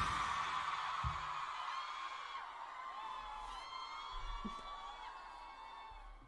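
Concert audience cheering and screaming with high whoops just after a live rock song stops, dying away over several seconds.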